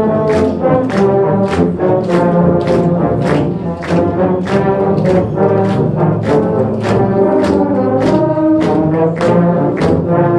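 A massed band of tubas and euphoniums playing a Christmas carol in low brass harmony. The audience claps along on the beat, a little over two claps a second.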